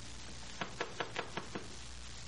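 Radio-drama sound effect of knuckles knocking on a wooden hotel-room door: about six quick raps within a second, over the low hum of the old recording.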